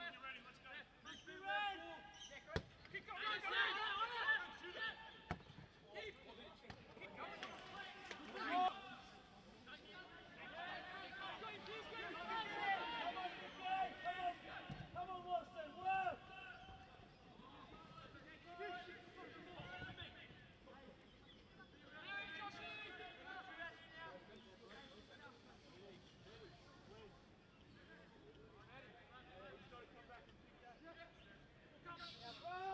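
Shouts and calls of footballers on the pitch, with a sharp thud of a football being kicked about two and a half seconds in and another about five seconds in.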